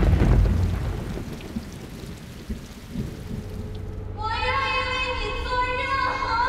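Trailer sound design: the rumble of a deep boom dying away under a rain-like hiss, like thunder in a storm, with a low rumble carrying on. About four seconds in, music enters with a long, steady held high note.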